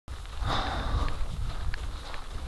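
A person sniffing, half a second in, over a low steady rumble of handling or wind on a handheld camera's microphone.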